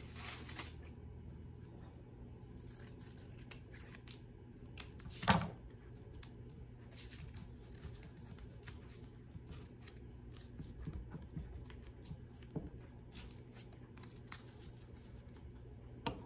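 Scissors snipping through construction paper, with light rustling and clicking as the paper is handled, and one louder click about five seconds in.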